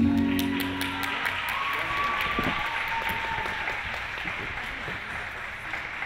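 Program music ending, its last held note dying away in the first second, followed by audience applause that slowly tapers off.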